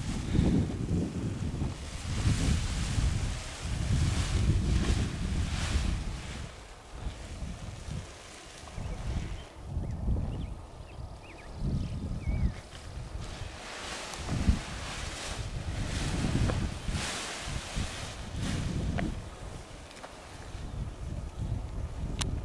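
Wind buffeting the microphone in uneven gusts: a low rumble that swells and dies away every second or two.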